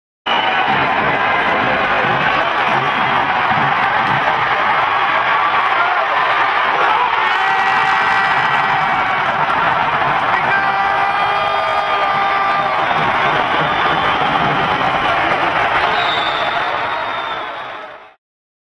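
Music with an ice hockey arena crowd cheering over it, steady and loud, fading out near the end.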